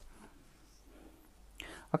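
Mostly quiet room tone, with a woman's voice starting to speak near the end.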